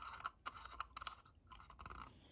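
A small screw-in bulb being turned by the fingers in its metal socket at the end of a tin toy robot's arm: faint scratching with a scatter of light, irregular clicks.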